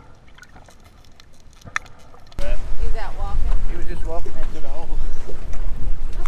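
Muffled underwater ambience with faint, scattered clicks. About two and a half seconds in, it cuts to loud wind buffeting the microphone above water, with indistinct voices underneath.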